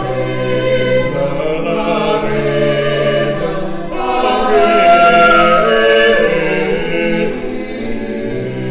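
A choir singing sacred music in long held notes, swelling louder about halfway through.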